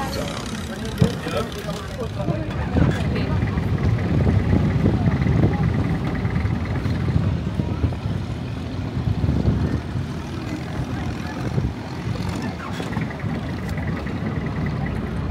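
A boat engine running steadily, with a rough, fluctuating low rumble and wind noise on the microphone.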